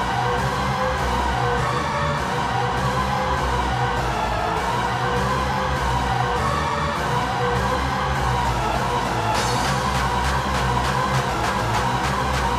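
1990s hardcore techno playing in a DJ mix: a steady, driving kick-drum beat under a held synth line. About nine seconds in, high ticking percussion comes in more strongly.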